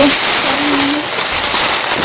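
Clear cellophane gift wrap crinkling loudly as it is handled close up.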